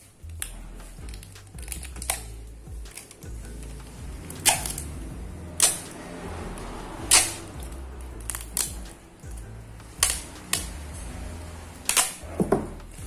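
Clear packing tape pressed onto a PVC card's protective plastic film and pulled sharply away, lifting the film: a string of short, sharp sticky rips and crackles, about nine spread irregularly, the loudest about four and a half, five and a half and seven seconds in.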